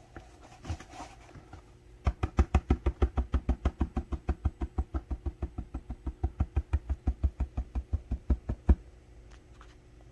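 Rapid, even tapping of a hard object, about seven knocks a second, starting about two seconds in and stopping after nearly seven seconds.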